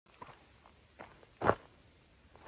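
Footsteps on a dirt forest trail: three steps, the third, about a second and a half in, much the loudest.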